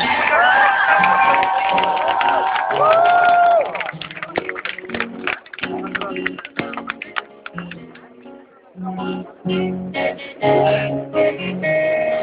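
Live band music with acoustic guitar: a voice holds long, gliding notes over the chords for the first few seconds, then strummed acoustic guitar chords go on in short phrases with brief gaps, dipping quieter just before they return. The sound is dull, with no treble.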